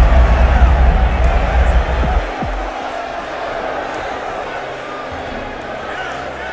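Boxing broadcast audio: a commentator's voice over the arena crowd. A loud, deep bass rumble, likely the low end of background music, runs underneath and cuts off about two seconds in.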